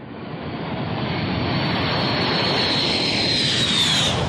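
Jet fighter making a low flyby: the jet engine roar swells over the first couple of seconds as it approaches, with a high whine that falls in pitch near the end as the aircraft passes.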